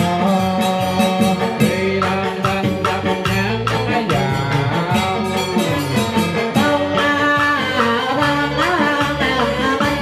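Vietnamese ceremonial nhạc lễ music played live on an electronic keyboard and an electric guitar, with sliding, bending melody lines over a steady percussion beat.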